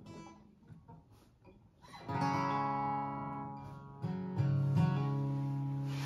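Gibson Dove acoustic guitar: a few faint touches on the strings, then about two seconds in a chord is struck and rings out. Around four seconds in, a second chord is struck and rings on, slowly fading.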